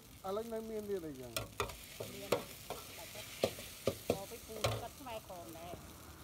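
Noodles frying with egg, beef and vegetables in a hot pan, a metal spatula stirring them: irregular sharp clanks and scrapes against the pan over a steady sizzle.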